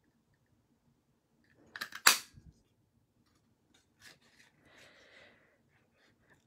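Hand-held oak-leaf craft punch closing on cardstock: a few small clicks as it is pressed, then one sharp snap about two seconds in as it cuts a leaf shape out, followed by faint handling of the paper.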